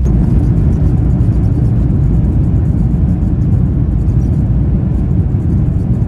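Airbus A350 cabin during the landing roll: a loud, steady low rumble from the aircraft running down the runway after touchdown, stepping up in loudness right at the start.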